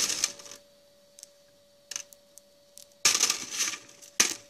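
Gravel and small pebbles clicking and rattling on a classifier's metal mesh screen as a hand sorts through them. There are a few sparse clicks, then a louder clatter of stones near the end.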